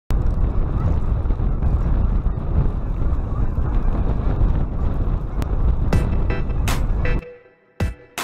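Strong wind buffeting the microphone, a loud steady rumble. Near the end, music with sharp drum hits comes in, and the wind noise cuts off suddenly, leaving only the music.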